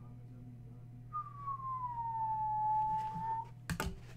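A person whistling one long note that glides down in pitch and levels off, followed by a couple of sharp clicks near the end.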